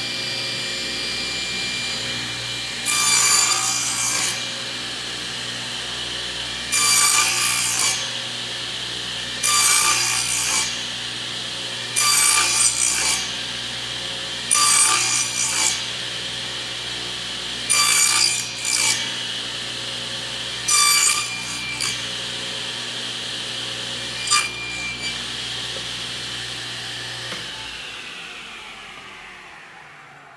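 Table saw running with its blade set low, taking about eight short partial-depth passes through a board on a crosscut sled, one every two to three seconds, to clear out the waste of a dado. Near the end the saw is switched off and its motor spins down.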